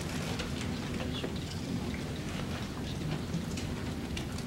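Steady background hiss of a large meeting room, with faint scattered clicks and rustles.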